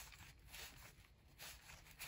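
Near silence, with a few faint, short swishes of basketball trading cards sliding against each other as they are thumbed through by hand.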